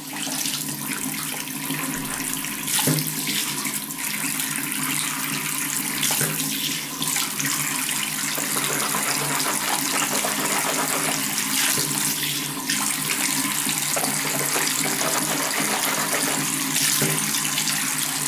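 Water running steadily from a bathroom tap, with a few faint brief knocks.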